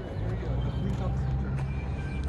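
Steady low rumble of city street traffic, with faint voices of people nearby.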